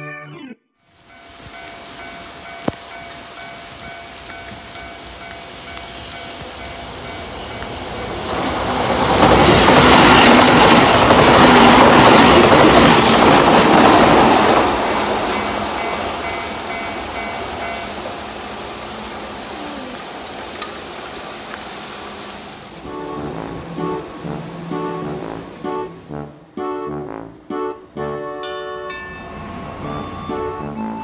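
Keihan 2600 series electric train passing at speed on wet track in the rain. A rushing noise swells over several seconds, is loudest for about five seconds, then fades away, with a faint steady whine under it. Background music takes over near the end.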